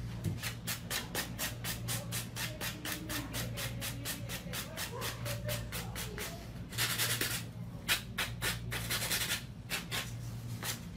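Hand nail file rasping across an acrylic nail in quick, even strokes, about five a second. Near the end come a few longer, heavier strokes.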